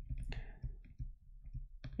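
Faint clicks and light scratches of a stylus tapping and writing on a tablet screen.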